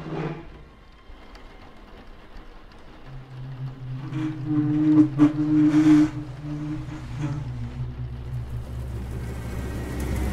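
Horror trailer sound design: a low, droning tone that swells from about three seconds in, with a few sharp hits near the middle, then settles into a steady low rumble.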